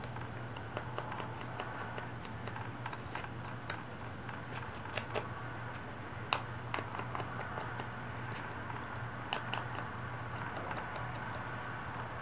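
Light, irregular taps and rustles of a small ink pad being dabbed along the edges of a paper sticker, over a steady low hum.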